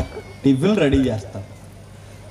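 Speech only: a man's amplified voice speaking one short, drawn-out word with a rise and fall in pitch about half a second in, over a low steady hum.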